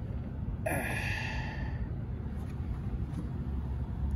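A man's sigh of effort a little over half a second in, lasting about a second and a half, over a steady low background rumble.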